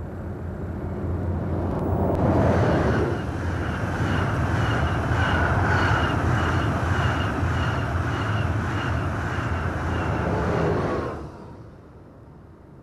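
A German ICE 1 high-speed electric train passing at speed. The rush of wheels on rail and air builds over the first two seconds, then holds with a regular clicking as the coaches go by. It falls away sharply about eleven seconds in.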